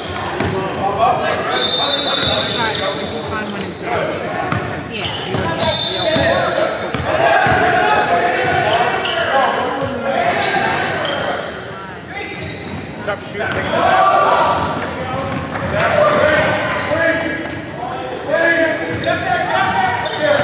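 A basketball being dribbled and bouncing on a hardwood gym floor, with high shoe squeaks and players and spectators calling out, all echoing in a large gym.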